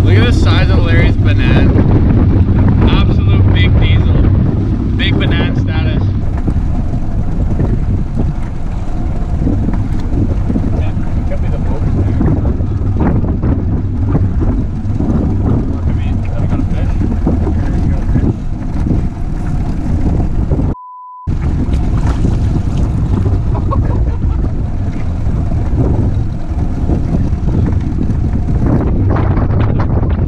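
Heavy wind buffeting the camera microphone as a dense, steady low rumble, over choppy water around a small aluminum fishing boat. About two-thirds of the way through, the sound cuts out for a moment behind a short steady beep.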